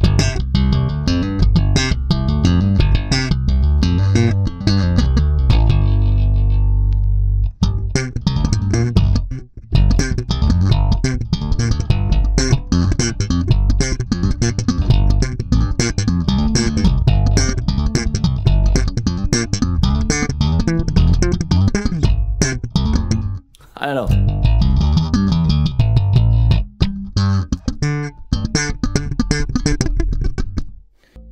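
Music Man StingRay four-string electric bass played slap style: a busy run of slapped and popped notes, with one low note held for about two seconds near the start and a short break a little over two thirds of the way through.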